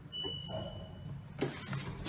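Elevator car-call button beeping once as it is pressed: a single high tone that fades out within about a second, followed by a sharp click, over a low steady hum.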